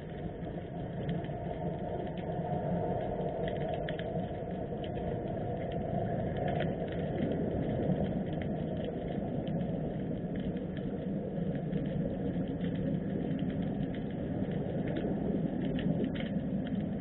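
Underwater sound picked up by a submerged camera in murky harbour water: a steady low rumble of water noise, with faint scattered clicks and crackles throughout.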